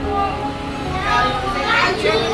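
Soft background music fading out as children's voices and party chatter take over, the high children's voices coming up about a second in.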